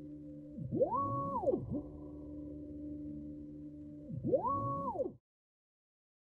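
Stepper motor driving a linear axis in a programmed back-and-forth loop: a steady lower whine during the slow move, then twice a whine that rises quickly in pitch, holds high for a moment and falls again as the motor accelerates into the fast move and brakes. The sound cuts off abruptly about five seconds in.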